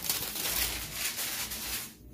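A thin protective paper sheet rustling as it is lifted and pulled off a freshly heat-pressed sublimation transfer, the rustle dying away near the end.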